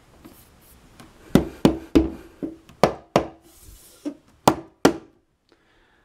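Hand tapping about ten times in quick succession on a wooden floating shelf mounted on its wall bracket, each tap a sharp knock with a short hollow ring, starting about a second in. The tapping checks that the shelf is solid and secure on the bracket.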